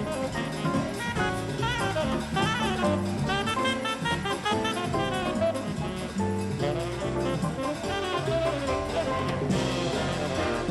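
Big-band jazz: a tenor saxophone solos in quick runs of notes over the rhythm section and drum kit, playing a samba-flavoured tune. The band grows fuller near the end as the brass comes in.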